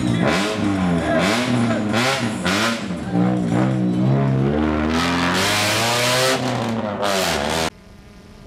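Fiat Palio rally car's engine revved over and over, its pitch rising and falling in a string of quick blips, cutting off abruptly near the end.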